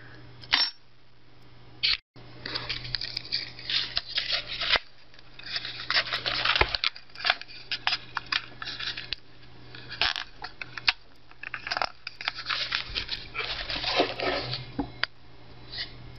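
A paperback book's cover being torn and picked apart by hand, in repeated irregular bursts of crackling, tearing and rustling paper. A faint steady hum runs underneath.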